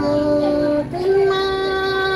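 A woman singing a Thai folk courting song of northwest Vietnam (hát giao duyên) unaccompanied, holding two long notes, the second a step higher than the first.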